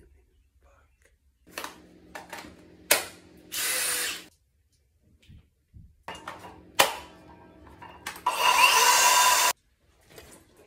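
Cordless Makita power tools being handled and briefly triggered: clicks and a couple of sharp knocks, then two short motor runs. The second, longer run near the end has a rising whine and cuts off suddenly.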